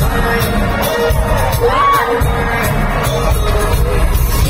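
Loud live pop music over an arena sound system, recorded from within the crowd, with a heavy pulsing beat. About two seconds in, a high pitched line sweeps up and back down over the mix.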